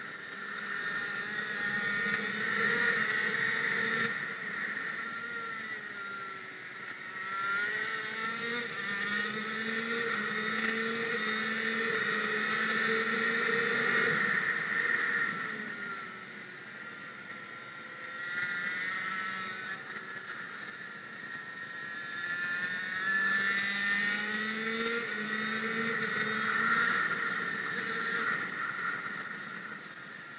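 A racing engine at speed around a circuit, its revs climbing in steps through gear changes on the straights and falling away twice as it slows for corners.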